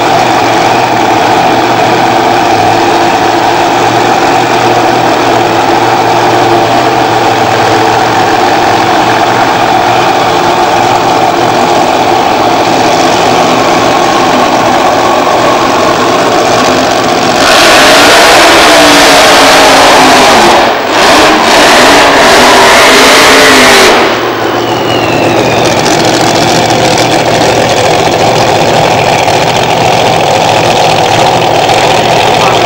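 Drag-racing car engines running at the start line. A little past halfway, a very loud full-throttle blast lasts about six seconds and is briefly broken once. The engines then run on at a lower level.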